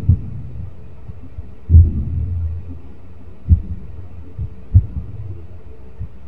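Four soft, low thumps, irregularly spaced a second or two apart, over a faint low hum; the second one, about two seconds in, is the longest.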